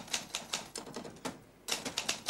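Typewriter keystrokes: a quick, irregular run of clacking key strikes, about five a second, with a brief pause near the end.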